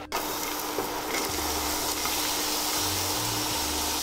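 Diced onion frying in hot olive oil in a stainless steel pot: a steady sizzle, with a faint steady low hum underneath.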